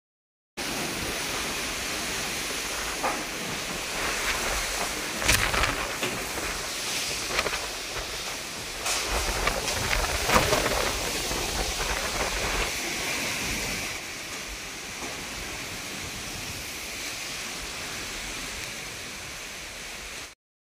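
Strong gusty wind blowing across the microphone and through trees, a rushing noise that swells and eases with the gusts, then settles to a steadier, quieter rush for the last third.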